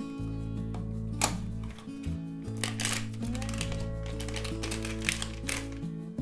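Soft background music with steady held notes, over which a small cardboard blind box and its contents are handled and opened: several sharp, irregular clicks and crinkles of packaging.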